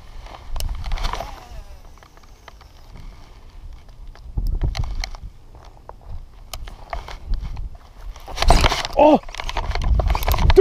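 Low rumble with scattered short clicks and knocks as the angler handles and reels a baitcasting reel. About eight and a half seconds in comes a louder burst of rustling with a short, falling vocal cry.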